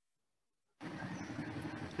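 Dead silence, then about a second in a steady rushing background noise cuts in abruptly through an online-call microphone, as the microphone's noise gate opens just before speech.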